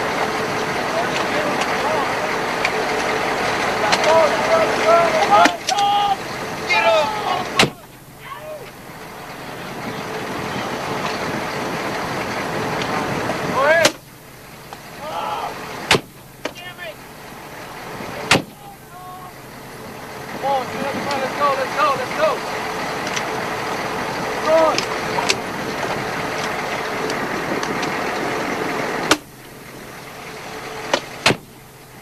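Military Humvee engine running steadily, with men's voices over it at times. The sound breaks off abruptly with a click several times.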